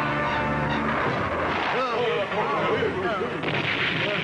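Cartoon sound effect of a fireball streaking through the sky: a loud, continuous rushing roar over a held musical chord. About a second and a half in, wavering cries from onlookers rise over it.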